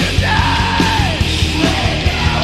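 Metalcore band playing live: distorted electric guitars and drums keeping a steady beat, with the lead vocalist holding one long note that falls away about a second in.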